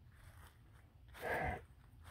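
Quiet, then one short breath from a person about a second in, lasting about half a second.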